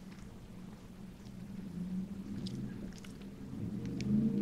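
Quiet chewing of French fries, with a few faint crinkles of the paper food wrapper, over a steady low hum.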